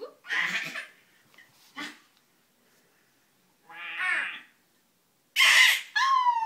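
A toddler laughing and squealing in several short bursts with pauses between, the last, near the end, the loudest.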